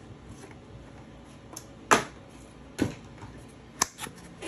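Handling of a small cardboard trading-card box: three sharp clicks or taps about a second apart, the first the loudest, with fainter ticks between.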